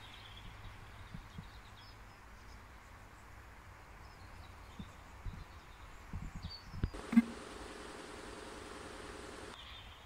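Quiet garden ambience with faint bird chirps and a low rumble. Several soft thumps come in the second half, then a sharper knock and a steady hum with hiss that lasts about two and a half seconds and cuts off suddenly.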